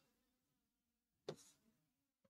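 Near silence: faint room tone, with one brief faint click about a second and a quarter in.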